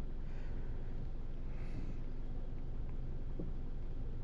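2016 Hyundai Elantra 2.0 GDI engine idling with a steady low hum. About three and a half seconds in, a faint click from the rear of the car: the evap canister close valve, normally open, shutting to seal the evaporative system for the scan tool's leak test.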